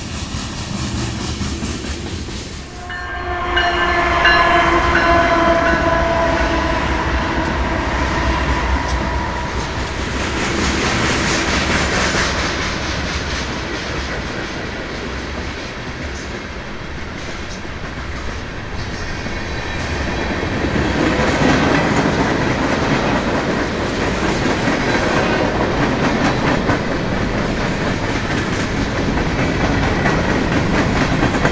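Freight train of covered hopper cars rolling past, with continuous rolling noise. About three seconds in, a train horn sounds for several seconds, its pitch dropping slightly, then the rolling noise carries on.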